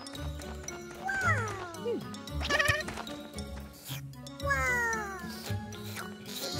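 Cartoon background music under wordless vocalisations from animated ant characters: a falling, whining glide, a short quavering call, then another set of falling glides.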